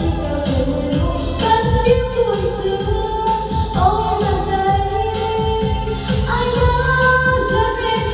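A Vietnamese karaoke song playing loud through the Weeworld SH1800 floor-standing speakers and subwoofer: a singing voice holding long, gliding notes over a backing track with a steady bass line.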